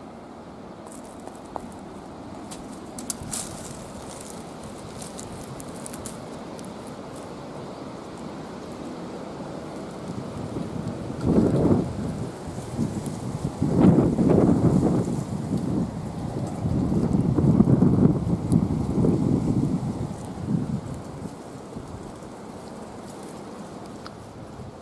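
Low rumbling noise on the camera microphone in irregular gusts for about ten seconds, starting about halfway through, over a faint steady outdoor hiss.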